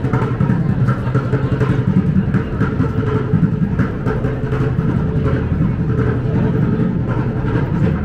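Steady, loud drone of motor traffic and engines running underneath, a dense city street din with no clear single event.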